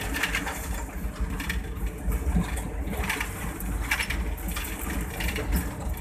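Cab noise of a PHA-20 diesel-electric locomotive running at speed: a steady engine rumble with irregular rattles and knocks from the cab and running gear.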